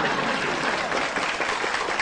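Audience applauding, a steady spread of clapping.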